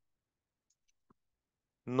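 Near silence with a single faint click about a second in; a voice starts up near the end.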